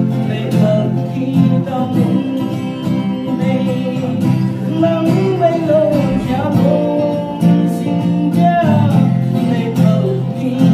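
A man singing to his own steadily strummed acoustic guitar.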